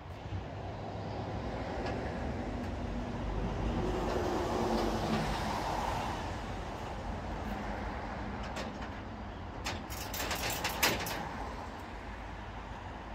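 A heavy truck running at a steady low level, swelling slightly in the middle, with sharp metallic clicks and clanks near the end as gear on the car-transporter trailer is handled.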